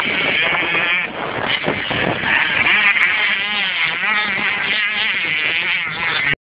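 Motocross bike engine running hard, its revs rising and falling again and again with a high, buzzing note.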